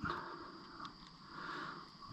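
Faint breathing from a person close to the microphone, swelling twice, with one small tick a little under a second in.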